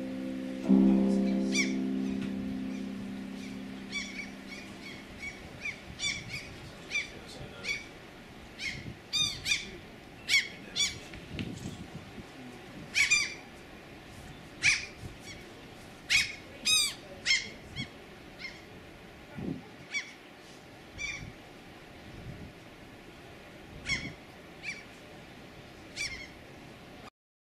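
A closing music chord sounds and fades away over the first few seconds, then birds give short, sharp calls, singly and in quick pairs, about one every second.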